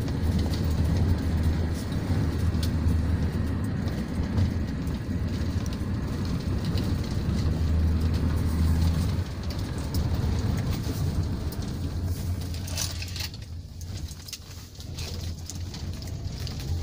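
A car driving along a road, heard from inside: a steady low rumble of engine and tyres with wind noise over it. It quietens a couple of seconds before the end.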